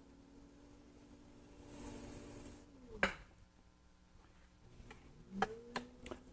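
Faint steady hum of an electric potter's wheel as wet clay is shaped by hand, its pitch dipping about three seconds in and rising again near the end. A brief hiss comes around two seconds in and a sharp click at about three seconds.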